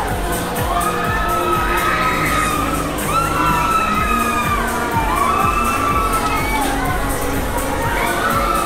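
Riders on a swinging, flipping fairground ride screaming: several long, overlapping screams that rise and fall, over music with a steady beat.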